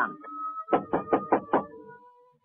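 Knocking on a door: five quick raps, about five a second, starting near the middle, over a soft held musical tone.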